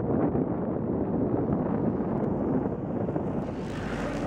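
Wind buffeting the microphone over road traffic noise. Near the end a brighter rushing sound builds, like a vehicle passing close.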